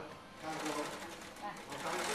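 Faint background voices over steady machine noise.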